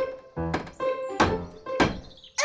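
Hammer knocking nails into wooden boards being nailed over a broken window: four sharp strikes about two-thirds of a second apart, over light background music.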